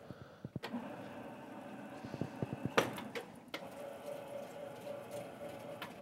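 Sliding blackboard panels being moved up and down in their frame: a rolling rumble with scattered knocks, the loudest about halfway through, and a steady hum in the second half that stops at the end.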